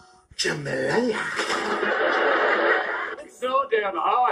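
Soundtrack of a YouTube Poop cartoon edit playing back: a voice about half a second in, then a loud, harsh, noisy stretch lasting about two seconds, then more speech near the end.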